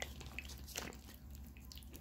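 Small tabletop rock-cascade water fountain trickling faintly, with a few soft drips.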